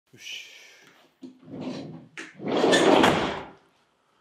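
A van's sliding side door being pulled shut: a few short knocks and rustles, then one longer, louder rolling slide that peaks about three seconds in.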